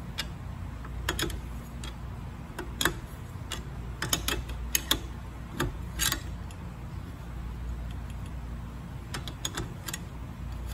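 Metal clicks and clinks of a wrench working the nut on a threaded steel axle bolt as it is loosened. The clicks come in irregular clusters of a few, over a steady low hum.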